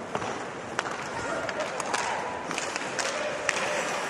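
Ice hockey arena crowd noise during live play, with skates scraping the ice and a few sharp clacks of sticks and puck.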